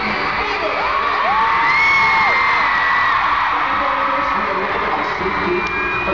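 Concert crowd screaming and cheering over music, with several long, high screams held for a second or more, mostly in the first half.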